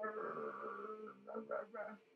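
A woman's voice imitating a troll: one held, pitched vocal sound for about a second, then four short vocal pulses.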